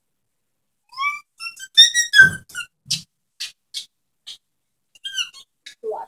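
A few short whistled notes that glide upward in pitch, followed by several short, high, hissy ticks about half a second apart.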